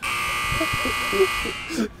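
A harsh, steady wrong-answer buzzer sound effect that cuts in suddenly and fades out after about a second and a half, marking an incorrect answer.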